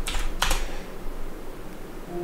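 Two sharp computer keyboard keystrokes within the first half second, entering and submitting a typed answer, then only faint room hum.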